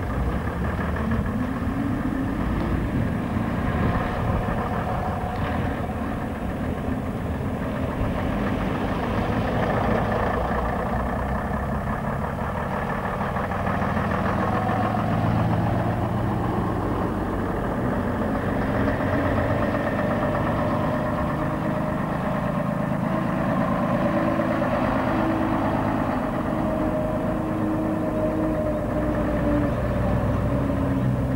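Engines of vintage double-decker buses running, idling and pulling away, the pitch rising and falling gently as they move off and manoeuvre.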